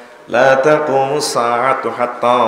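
A man's voice chanting in a drawn-out, melodic recitation style, amplified through microphones, starting after a short pause about a third of a second in.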